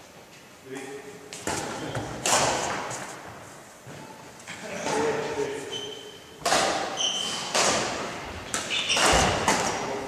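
Badminton doubles play in a sports hall: sharp racket strikes and thuds of feet on the wooden floor, each ringing in the hall's echo, with a couple of brief shoe squeaks and short spoken calls between players.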